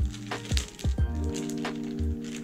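Background music of held chords over a bass line, with kick-drum beats about twice a second. Over it, the crackle of a laptop's clear plastic sleeve being handled.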